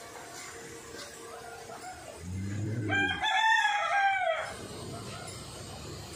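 A rooster crowing once, about three seconds in: one call of about a second and a half that arches up and back down in pitch. Just before it comes a brief low-pitched sound.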